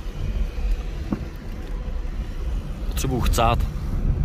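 Car driving on a paved road, heard from inside the cabin: a steady low rumble of engine and tyres.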